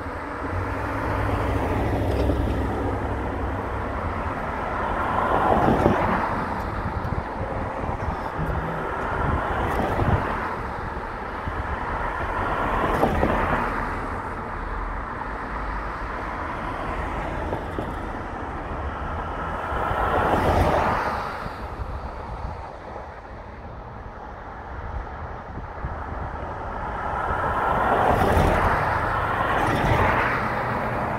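Traffic and road noise heard from a car driving along a city boulevard: a steady rumble of tyres and engines, rising and falling about five times as vehicles pass close by.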